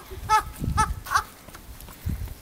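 A child laughing in three short, high-pitched bursts within the first second or so.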